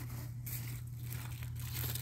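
Swiss chard leaves rustling and crinkling as a hand works through the plants to pick them, over a steady low hum.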